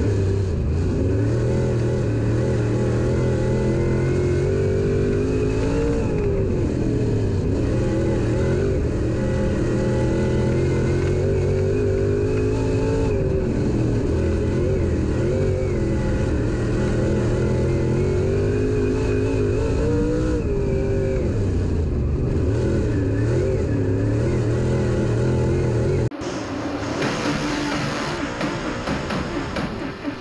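Dirt late model race car's V8 engine heard from inside the cockpit at racing speed, revving up and easing off in a repeating cycle of about seven seconds, lap after lap. About four seconds before the end it cuts off abruptly to a quieter, hissier mix of sound.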